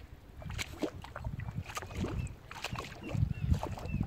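Lake water lapping and splashing in the shallows close to the microphone, with irregular small splashes as a common pochard drake dips its head to feed, growing busier toward the end.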